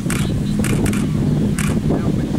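A steady low engine hum, like a vehicle running close by, under a continuous outdoor rumble, with a few short hissing bursts over the top.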